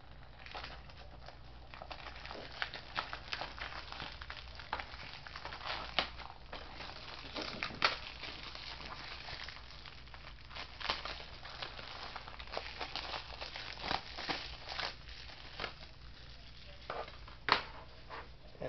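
Clear plastic shrink-wrap being peeled and pulled off a DVD case, crinkling and crackling irregularly with scattered sharper snaps.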